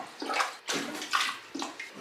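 Rubber plunger being pumped in a toilet bowl, water sloshing and splashing in about three strokes as it forces the bowl water down the drain to empty it.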